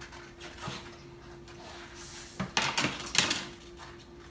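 Clicks and rattles from a hand tool being picked up and handled, in a cluster about two and a half to three and a half seconds in, over a faint steady hum.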